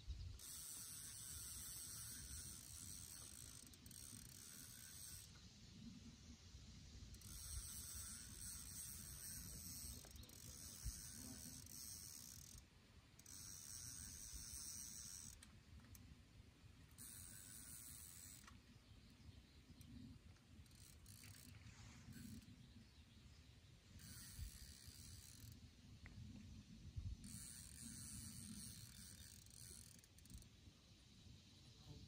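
Spinning reel being cranked in repeated bursts of one to three seconds with short pauses, a whirring, ratcheting sound, as a hooked fish that is pulling hard is reeled in.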